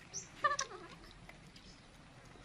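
A young macaque gives a short high squeak, then a brief call that falls in pitch, about half a second in.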